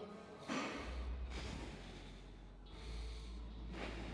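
A man breathing hard while holding a forearm plank, with about three heavy breaths, one about half a second in, a longer one in the middle and one near the end, over a steady low hum.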